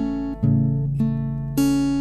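Acoustic guitar with a capo, fingerpicked in a steady arpeggio: a bass note, then the third string, the second and first strings together, then the third string again, each note left ringing. About four plucks in two seconds.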